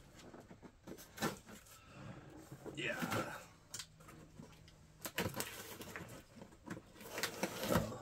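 Packing tape on a cardboard box being scratched and slit along with a small tool, then the box flaps pulled open: scattered light scratches and taps, with a longer stretch of cardboard scraping and rustling about five seconds in.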